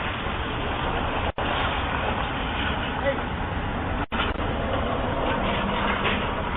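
Street traffic picked up by a Ring doorbell camera's microphone: a steady rushing noise as vehicles approach, with a low engine hum coming in near the end. The audio drops out for an instant twice.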